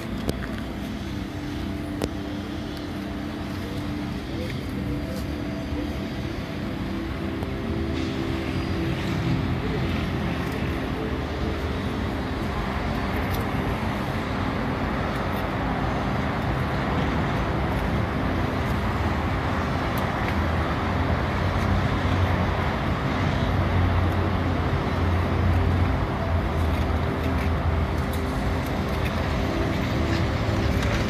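Steady motor-vehicle engine rumble mixed with traffic noise, growing louder over the first ten seconds and then holding.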